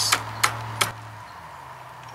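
Three sharp clicks and knocks in the first second as a small solar panel's bracket is slid onto its mount and locks into the clip.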